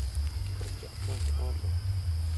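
A few brief, low voice sounds about halfway through, over a steady low rumble and a constant thin high whine.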